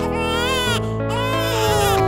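An animated baby character crying in wails over a children's song backing track, with a long falling wail in the second half.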